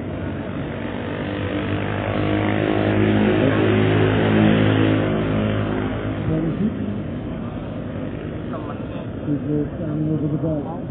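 A motor engine passing close by, its steady hum swelling to a peak about four seconds in and fading out about seven seconds in.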